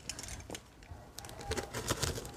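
Faint handling noise from a shrink-wrapped cardboard box: light clicks, knocks and rustles, a small knock about half a second in and more ticking in the second half.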